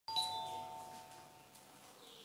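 Doorbell rung by its wall push-button: a single chime that starts sharply and fades away over about a second and a half.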